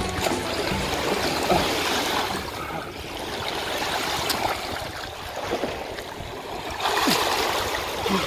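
Shallow seawater washing and splashing at the shoreline around a person moving through the wash, with a louder surge of water about seven seconds in.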